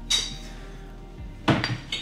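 Glass clinking on glass as a whiskey bottle is tipped over a tumbler to pour out its last drops. A sharp ringing clink comes right at the start, then a duller glass knock about a second and a half in as the bottle is set down.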